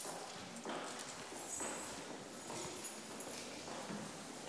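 Faint, irregular footsteps, shuffling and occasional knocks of a congregation standing and moving about in a large hall.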